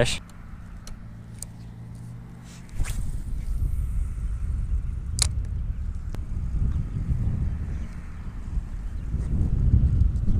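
Wind buffeting the microphone as a low rumble that starts suddenly about three seconds in, with a few sharp clicks.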